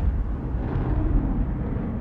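A deep, steady rumble, heaviest in the low end and easing off slightly toward the end: the sound effect of an animated logo intro.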